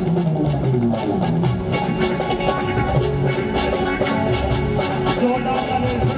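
Live band music, with an electric keyboard and a guitar playing together.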